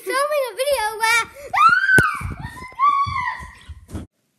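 A young girl's high voice shrieking and squealing playfully without clear words, with one loud drawn-out scream that rises and falls about halfway through.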